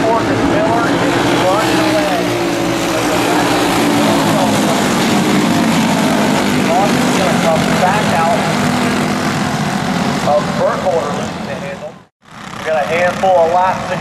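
A pack of racing karts' small engines running and revving together on the track, their pitch rising and falling as they lap. The sound cuts out for a moment about twelve seconds in, then returns with the karts closer.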